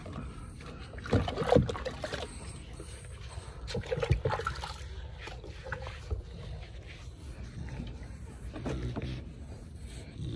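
Water sloshing and splashing in a plastic tub as a dog's wet, soapy coat is scrubbed with a rubber grooming brush, in irregular bursts of rubbing and splashing.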